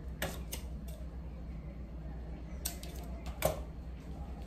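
A few short, sharp clicks and snaps from hands pulling a knot tight in nylon fishing line around a strip of gauze bandage, a few early on and a cluster about three seconds in, over a steady low hum.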